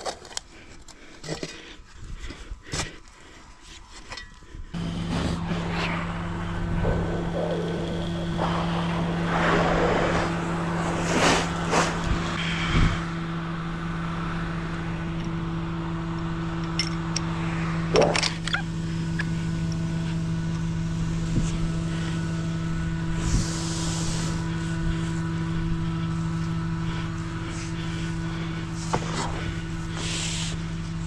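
A shovel scraping and chopping into packed soil for the first few seconds; then, from about five seconds in, the steady hum of the septic vacuum truck's engine running, with occasional metal knocks from the suction pipe and its fittings being handled.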